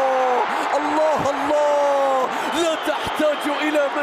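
Arabic football commentator's long, drawn-out excited shout, held for about two seconds, then quick excited speech, over stadium crowd noise.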